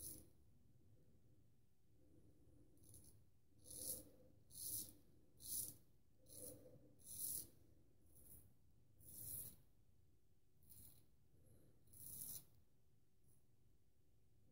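Faint, crisp scrapes of a full-hollow Solingen straight razor cutting lathered stubble against the grain in short strokes, about a dozen in all, coming roughly one a second through the middle.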